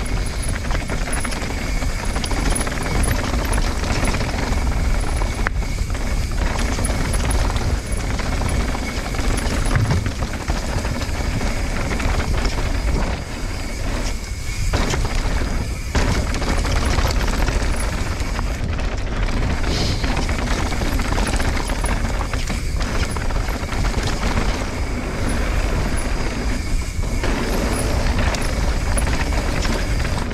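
Mountain bike rolling fast down a dirt and gravel trail: a steady rush of wind on the action camera's microphone over tyre roll and bike clatter, with scattered knocks from bumps.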